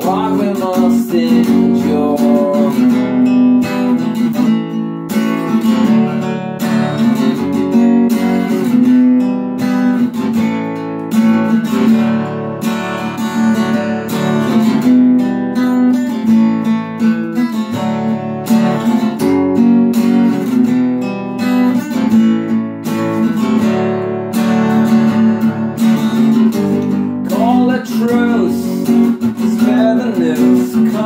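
Steel-string acoustic guitar strummed in a steady rhythm, an instrumental passage of changing chords.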